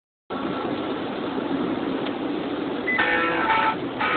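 Steady road and engine noise heard from inside a moving car's cabin. About three seconds in, music starts over it, with sustained pitched notes.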